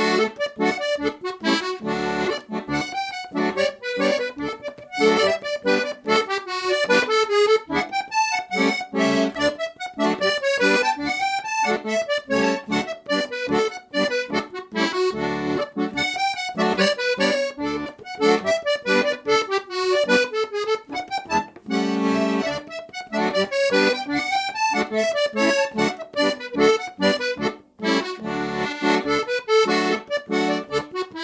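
Serenelli Professional Opera piano accordion playing a traditional Scottish dance fiddle tune in D: a quick right-hand melody over a regular left-hand bass-and-chord accompaniment.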